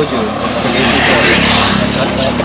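A motor vehicle passing close by: a rushing noise over a low engine rumble that swells about a second in and eases off near the end.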